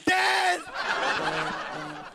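A loud shout of pain for about half a second, then a studio audience laughing for the rest, fading toward the end.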